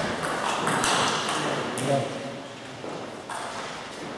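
Table tennis ball clicking off bats and table as a doubles rally ends, with a sudden loud shout or cheer from the players right at the start that dies away over the next couple of seconds.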